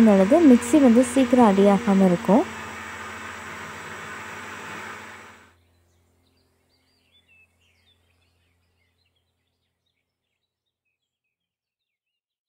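Electric mixer grinder running steadily as it grinds soaked rice into dosa batter, with a woman talking over it for the first couple of seconds. The motor noise cuts off suddenly about five and a half seconds in, followed by silence.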